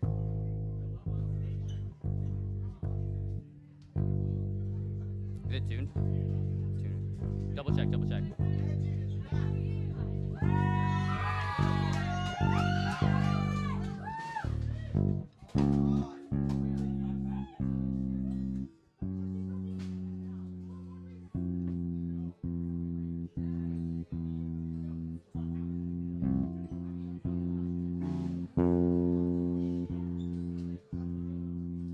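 Electric bass guitar being tuned through its amp: single low notes plucked about once a second and left to ring, stopped, then plucked again, the pitch stepping as the pegs are turned. About eleven seconds in, an electric guitar plays a few seconds of high bent notes over it.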